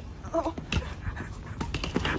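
A short "oh" from a person, then a few sharp knocks and scuffs of footsteps and rolling-suitcase wheels on stone pavement.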